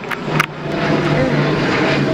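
Jet airliner flying low overhead: a steady engine rumble that grows louder from about half a second in and then holds.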